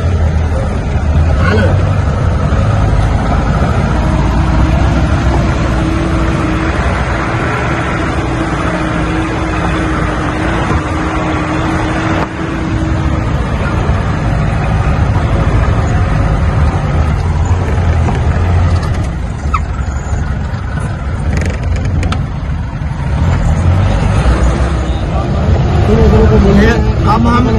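4×4 jeep engine running as the jeep drives up a rough gravel mountain track, heard from inside the cab, with a steady low rumble and road noise from the stony surface. A steady whine runs through the first half for several seconds.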